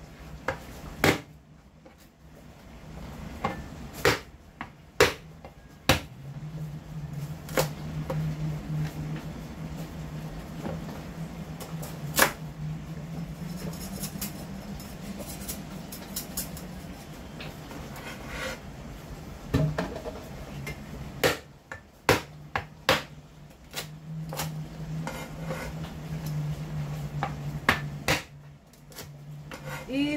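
A Chinese cleaver cuts celery stalks on a cutting board: single sharp knocks of the blade meeting the board, spaced irregularly, with a few quicker pairs. A low hum comes and goes underneath.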